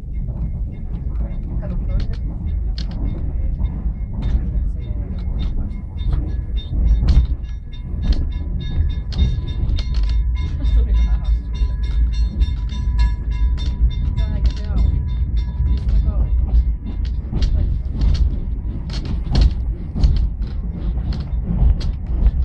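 Inside a vintage passenger coach hauled by an Hr1 steam locomotive: a steady low rumble from the moving train, with frequent knocks and rattles from the wheels and the coach.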